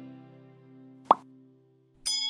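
Intro music's held chord fading out, then a single short pop sound effect that rises in pitch about halfway through, like a button-click effect in an animation.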